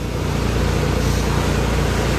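The Isuzu Forward wing van's diesel engine runs steadily as the truck moves off slowly.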